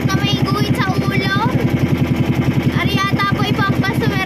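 A motor engine running steadily with a fast, even pulse, loud and close. Voices talk over it early on and again near the end.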